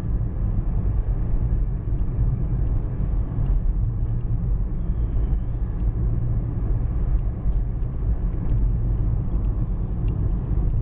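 Steady low rumble of a car on the move, heard from inside the cabin: engine and tyre noise on the road surface.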